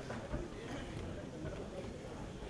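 Indistinct chatter of many people talking at once as an audience mills about, with a few soft knocks mixed in.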